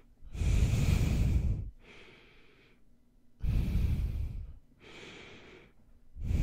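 Heavy nasal breathing right into the microphone for ASMR: two loud, long breaths, each followed by a softer one.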